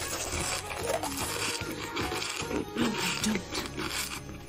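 Soft background music under wet mouth clicks and chewing from eating a jelly candy close to the microphone.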